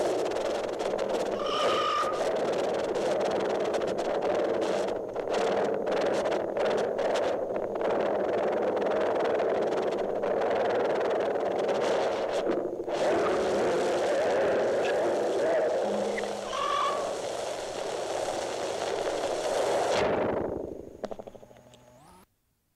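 Experimental tape-collage music (musique concrète) made from layered tape tracks, with no samples or effects: a dense, steady noise texture with scattered clicks and two brief pitched tones. Near the end it slides downward in pitch and fades out.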